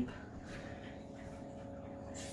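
Quiet indoor room tone with a faint, steady high hum and no distinct sound event.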